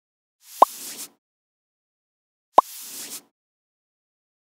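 Two logo-animation sound effects about two seconds apart, each a brief whoosh with a sharp pop that glides quickly upward in pitch.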